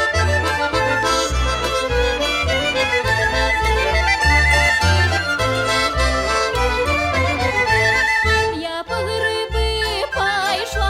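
Belarusian folk instrumental music led by accordion over a steady pulsing bass, with a quick trill about four seconds in and another near eight seconds.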